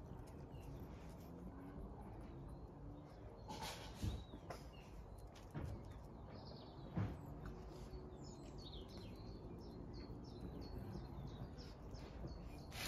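Faint outdoor birdsong: a small bird chirping over and over in short, quick notes, mostly in the second half. A few soft knocks stand out above the quiet background about four and seven seconds in.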